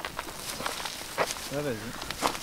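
A few separate footsteps on forest ground, with a short spoken sound near the end.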